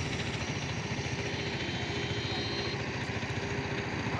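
Small Honda motorcycle engine running steadily with a fast, even beat.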